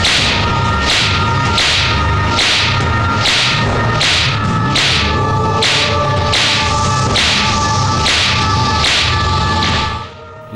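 Film fight sound effects: a rapid, even run of whooshing swings and blows, about two a second, each with a dull thud, over a steady held music drone.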